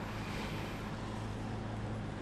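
Steady low hum of a passenger van's engine and road noise, heard from inside the cabin as it drives.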